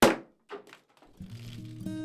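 A bottle of sparkling wine popping open sharply as its contents spray out, followed by a couple of softer noises. Guitar music comes in about a second later.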